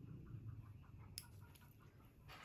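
Near silence: room tone, with a faint run of small quick ticks and one sharp click a little past a second in.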